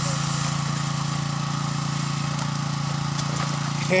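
A small engine running steadily at a constant speed, a low, even hum with no change in pitch.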